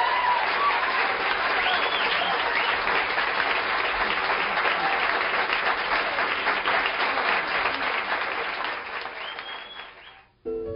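Audience applauding steadily at the end of a tune, the applause fading away near the end.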